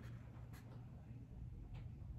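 Faint rustling of a paper picture book being handled and shifted in the hands, two brief soft brushes over a low steady room hum.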